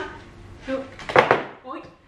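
A woman's short startled exclamations ("oj") while a long-haired cat struggles out of her grip. About a second in comes the loudest sound, a brief rasping, breathy burst.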